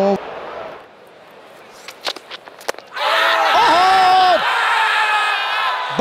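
Cricket fielders shouting a loud appeal together, one voice held high for about a second, over crowd noise. Before it come a quieter stretch of crowd murmur and a few sharp clicks about two seconds in.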